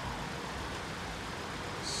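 Steady outdoor background noise: an even hiss with a low rumble underneath, and no distinct sound standing out.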